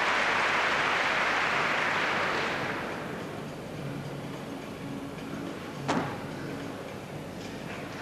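Arena crowd applauding a skill on the balance beam, fading out over the first three seconds. About six seconds in comes a single sharp knock, the gymnast's foot landing on the beam.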